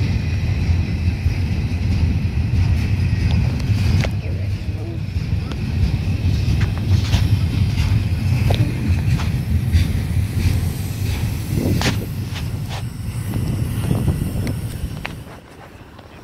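Double-stack intermodal freight train rolling past: a steady rumble of steel wheels on rail, with scattered clanks and clicks. The sound drops off about fifteen seconds in.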